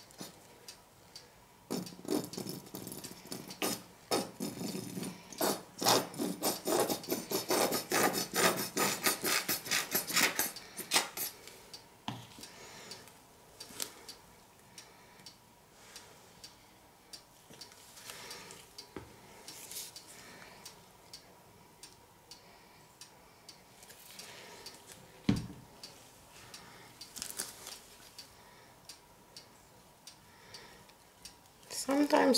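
Plastic squeeze bottle of acrylic paint being squeezed as paint is drizzled from it, giving a rapid rasping, crackling run of sounds for several seconds, then only scattered soft clicks. A single sharp thump about 25 seconds in.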